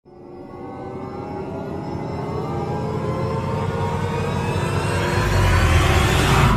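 Cinematic intro riser: a sustained swell of tones that grows steadily louder, with a deep bass boom coming in about five seconds in.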